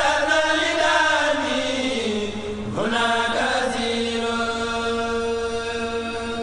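A solo voice singing a religious chant in long, drawn-out phrases over a steady held drone. The voice swoops up at the start and again about three seconds in, then slides slowly down.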